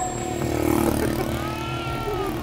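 Pickup truck engine running with a steady low hum.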